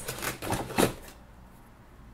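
Packaging rustling with a few sharp clicks as a glass bottle is lifted out of a subscription box, all within the first second.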